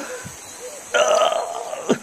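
A man's harsh, guttural gasp, rasping for about a second from about halfway in, like someone choking or struggling for breath.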